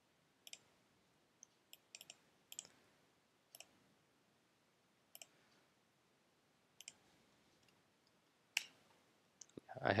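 About a dozen faint, sparse clicks from a computer keyboard and mouse while a record ID is entered into a browser address bar. The loudest click comes about a second before the end, with near silence between the clicks.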